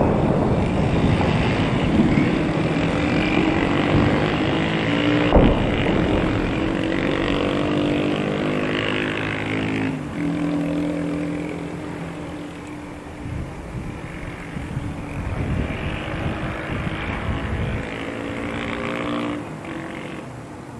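The low rumble of a blast dies away at the start, giving way to a steady engine drone whose pitch shifts slightly now and then. A single sharp crack comes about five seconds in, and the drone fades near the end.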